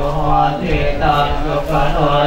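Thai Buddhist monks chanting Pali verses: a steady, unbroken near-monotone recitation.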